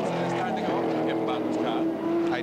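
Racing touring cars' V8 engines running hard at speed on the circuit, a steady engine note that lifts slightly in pitch a little under a second in, with a commentator's voice over the top.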